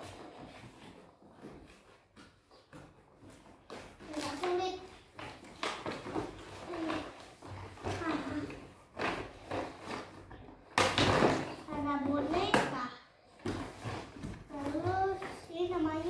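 A young girl talking in a high voice, with cardboard rustling and scraping as a toy box is opened. A loud, sudden scrape of cardboard comes about two-thirds of the way through.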